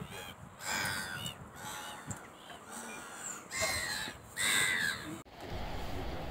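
Gulls calling over a river, a string of short harsh cries that rise and fall in pitch, loudest a little past the middle. Near the end a low steady rumble takes over.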